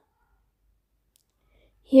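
Near silence, with nothing audible, until a voice begins speaking near the end.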